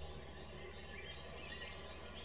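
A quiet pause: faint background noise over a steady low hum.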